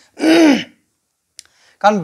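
A man clears his throat once, a short loud half-second sound.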